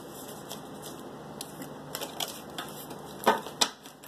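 A tarot deck being shuffled by hand: soft, scattered card clicks and riffles, with two sharper snaps near the end.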